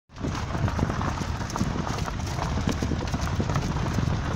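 Footsteps of a person and a dog crunching on a gravel path at a brisk pace, a quick irregular patter over a steady low rumble.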